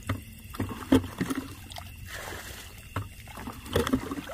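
Hands splashing and sloshing in a shallow puddle of muddy water while feeling for fish, in a run of uneven sharp splashes, the loudest about a second in and another near the end.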